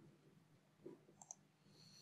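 Near silence, with two faint computer-mouse clicks in quick succession a little over a second in.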